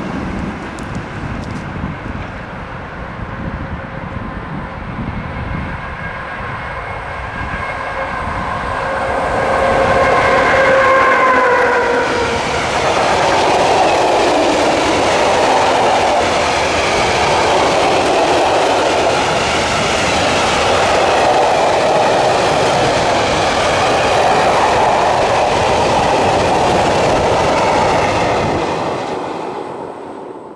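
An electric freight locomotive's horn sounds a chord of several tones for about six seconds, dipping slightly in pitch at the end as it passes. A long train of covered hopper wagons then rolls by with a steady rumble and clickety-clack of wheels on rail joints, fading out near the end.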